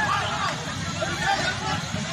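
Several people talking and shouting at once, over the steady rumble of a running vehicle engine.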